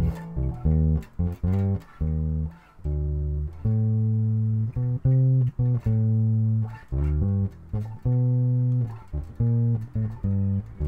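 Electric bass guitar played fingerstyle on its own: a bass line of short plucked notes and notes held for about a second, with brief gaps between phrases and a few sliding notes.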